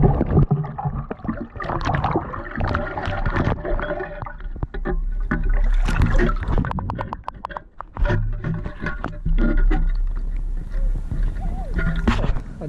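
A perforated metal sand scoop digging into a lake bottom underwater, then lifted so water sloshes and drains out through its holes while sand and gravel rattle inside. There are many quick clicking rattles around the middle.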